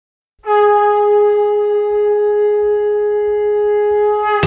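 A conch shell (shankh) is blown in one long, steady note, starting about half a second in. This is the traditional call that opens an aarti.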